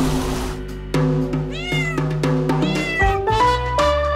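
A domestic cat meowing twice, each meow rising and then falling in pitch, over background music; a short rush of noise comes at the start.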